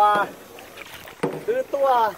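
People talking in a kayak, with a short pause about a quarter second in where only faint paddling and water noise is heard under the voices.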